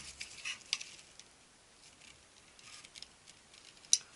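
Small flat screwdriver prying at the retaining clip on a copier drum's shaft: a few light scraping clicks in the first second, a soft scrape later, and one sharp click just before the end.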